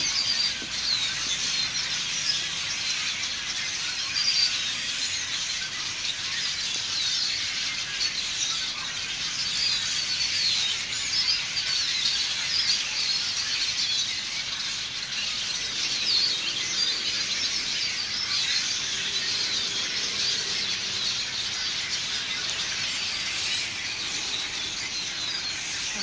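A flock of hundreds of birds massed in the treetops, all calling at once: a dense, unbroken chatter of many short, overlapping high calls.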